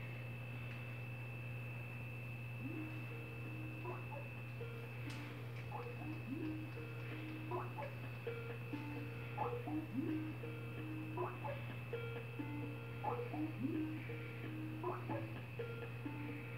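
A sparse, quiet melody of short plucked-sounding notes, some sliding upward, plays through a television speaker and starts about two seconds in. A steady low hum runs under it, and a faint high steady tone fades out partway through.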